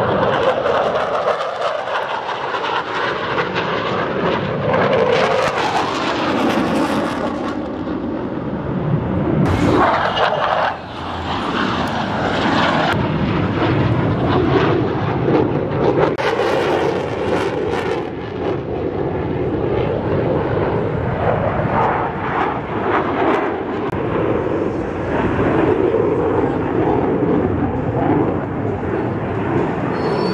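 F-16 fighter's jet engine noise during a display flight: loud and continuous, swelling and fading as the jet manoeuvres, with a brief dip about eleven seconds in.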